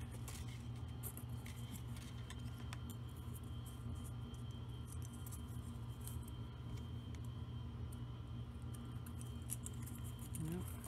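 Faint scattered clicks and ticks of thin craft wire and small Christmas ball ornaments being handled, over a steady low hum.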